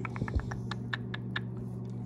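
A quick run of about ten light, irregular clicks and taps, thinning out after the first second and a half, over a steady low hum.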